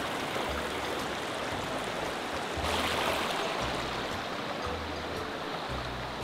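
Flowing mountain creek running over rocks, a steady rush of water that swells briefly near the middle. Background music with low bass notes plays underneath.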